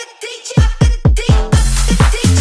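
Bass house music from a live DJ mix: a short break with the bass dropped out, then the kick drum and heavy bass come slamming back in about half a second in on a fast, even beat.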